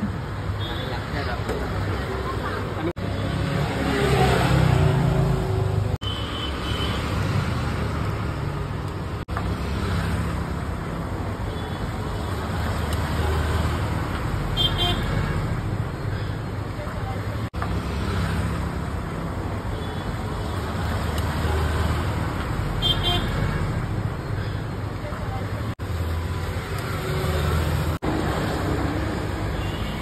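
Street ambience: steady road traffic with voices in the background. It drops out briefly several times where the footage is cut.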